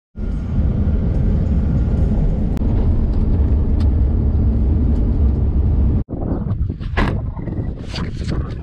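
Interior road noise of a vehicle driving on a dirt road: a steady low rumble that cuts off suddenly about six seconds in. After the cut it is quieter, with a few brief rustling noises.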